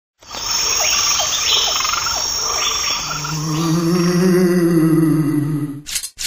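Crickets and frogs chirping in a night-time ambience. About three seconds in, a long, low held tone joins them and swells, then fades out just before the end.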